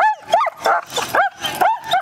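A dog yipping: a quick run of short, high-pitched yips, about three or four a second.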